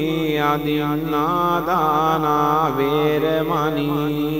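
Buddhist pirith chanting in Pali: a voice intones the sutta in long, drawn-out held notes whose pitch bends slowly up and down, without a break.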